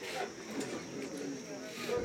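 Indistinct background chatter of a few people talking at a gathering, no clear words.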